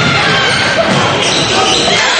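Basketball dribbled on a hardwood gym floor, with voices echoing in a large gymnasium.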